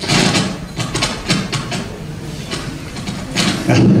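Loud rumbling and crackling over the hall's microphone and sound system, with scattered knocks: microphone handling noise, the noise the speaker calls too loud.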